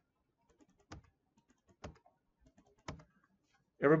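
Three single keystrokes on a computer keyboard, about a second apart, as words are deleted from lines of code. A man's voice starts right at the end.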